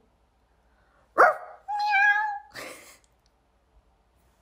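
An animal noise made by a person: a cat-like meow. A sudden rising yelp comes about a second in, then a drawn-out meow held at a steady pitch, ending in a short breathy rasp.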